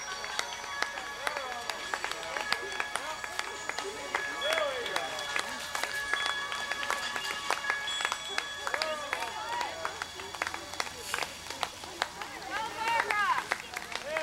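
Scattered hand claps from roadside spectators cheering on passing runners, with shouted voices, loudest about thirteen seconds in. Some held steady tones, probably music, run underneath.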